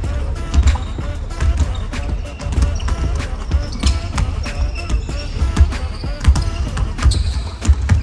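Basketball being bounced on a hardwood court, with repeated sharp impacts, under music with a pulsing low beat and some voices.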